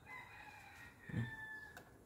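A rooster crowing faintly: one long call lasting about a second and a half that drops slightly in pitch toward its end.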